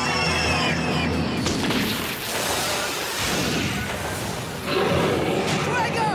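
Animated battle soundtrack: a laugh at the start over dramatic music, then a dense rush of noisy fight sound effects with booms, rising again near the end.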